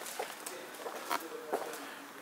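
Quiet indoor room noise with a few faint, soft clicks.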